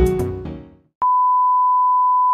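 Intro music fading out, then about a second in a steady, high-pitched test tone starts and holds: the bars-and-tone reference tone that goes with television colour bars.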